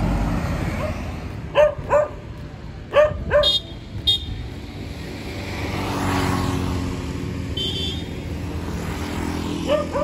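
A dog barking: four short barks, in two pairs, in the first few seconds. A motor scooter passes by about six seconds in.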